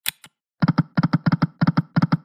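Video slot machine game sound effects: a short click as the spin starts, then the five reels stopping one after another. Each reel stop is a quick cluster of clicky knocks, about three stops a second.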